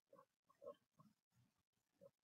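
Near silence: faint room tone with a few very faint, short sounds.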